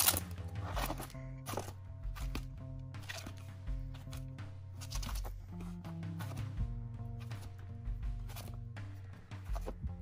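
Background music with held low bass notes that step from one pitch to another every second or so, under irregular soft knocks of LP sleeves being flipped forward in a cardboard box.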